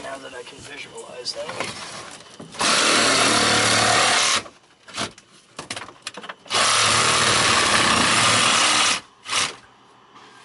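A DeWalt cordless reciprocating saw cuts into a boat's rotted fiberglass-and-wood floor in two runs of about two seconds each, the first starting about two and a half seconds in. Before the first run there are scattered small knocks and scrapes of debris.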